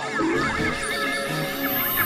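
Experimental synthesizer music: low held notes under a dense swarm of fast warbling pitch glides.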